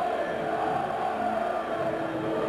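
Football crowd in the stands, with drawn-out singing or chanting held over a steady crowd noise.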